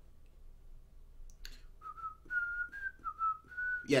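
A person whistling a short tune of about six notes, one thin high note at a time, starting a little under two seconds in and stopping just before speech.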